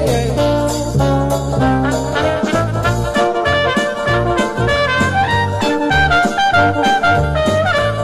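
Swing jazz backing track with a walking bass and drums, joined partway through by a trumpet playing the melody live.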